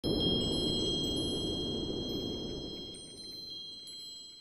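Intro sting: high, tinkling chime tones that strike one after another and ring on, over a low rushing whoosh that fades away over the first three seconds.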